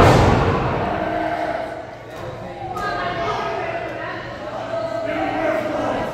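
A heavy thud as a wrestler's body hits the ring mat right at the start, ringing briefly through the hall, followed by voices from the crowd.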